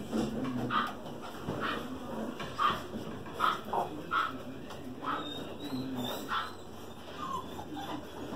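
Australian Shepherd puppies yipping and whimpering as they play-fight over toys, short high cries about once a second, some sliding in pitch.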